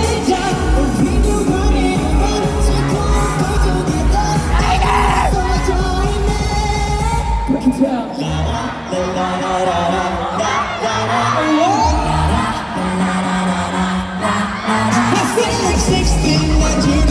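Pop dance song with sung vocals, played loud through a PA system during a live stage performance; a heavy beat and bass carry it, dropping out for a moment about halfway through and again a few seconds later.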